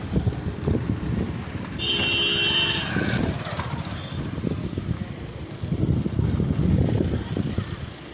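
Wind buffeting the microphone and low rumble from riding a bicycle along a road, with a horn sounding one steady tone for about a second, about two seconds in.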